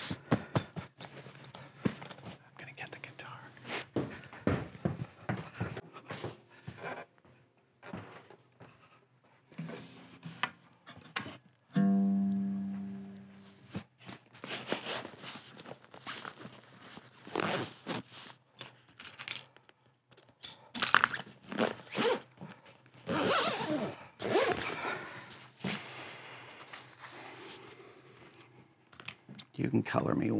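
Canvas and padding of a soft guitar case rustling and scraping as it is pulled over a rigid inner shell, then a zipper being drawn along the case. About twelve seconds in, a single low pitched note rings and fades.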